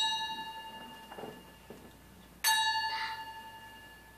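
A small bell rings and fades, then is struck again about two and a half seconds in and rings out once more, marking the end of the kneeling meditation.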